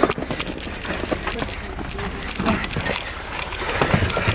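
Rustling, bumps and clicks of clothing and handling as people climb into a car, over a low steady hum and muffled voices.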